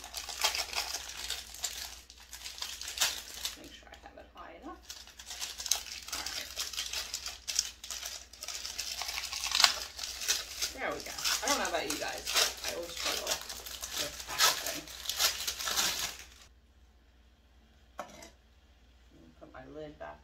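Plastic wrapper of a store-bought rolled pie crust crinkling and tearing as it is pulled open by hand. The crinkling goes on in dense handling bursts and stops a few seconds before the end, followed by a single click.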